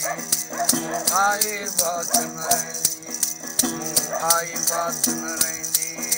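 A long-necked gourd lute is plucked in a steady drone, with a regular rattling click rhythm about three times a second. A wordless wailing voice rises and falls about a second in and again around four seconds.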